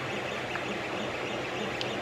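Creality CR-10S 3D printer running mid-print: a steady whir from its hotend cooling fan and the stepper motors moving the print head.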